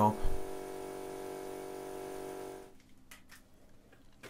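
A steady machine hum with several pitched tones over a hiss cuts off abruptly about two-thirds of the way through. A few faint clicks follow in the quieter stretch.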